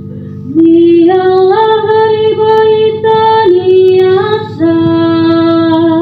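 A woman singing a psalm solo, holding long notes that step up and down in pitch. She starts about half a second in and takes a short breath about four and a half seconds in.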